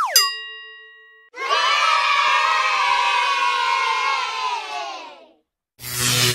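A quick falling glide into a ringing chime that fades within about a second, then a crowd of children cheering for about four seconds, the voices sliding down a little in pitch as the cheer dies away.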